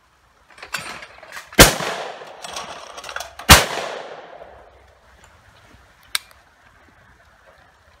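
Two shotgun shots about two seconds apart at a clay target launched on the shooter's call of "pull". Each shot is followed by a long fading echo. A single sharp click follows about six seconds in.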